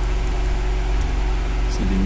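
Steady low hum with background noise, with a few faint keyboard clicks as code is typed; a voice starts near the end.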